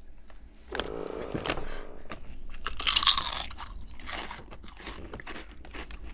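Two people biting into potato chips together, Ruffles and Lay's, and chewing them: the crunching starts about a second in, is loudest and sharpest around the middle, then fades to softer chewing.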